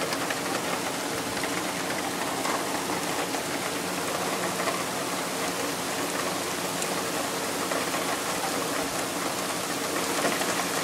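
Steady rain falling, an even hiss that does not change, with a faint steady hum underneath.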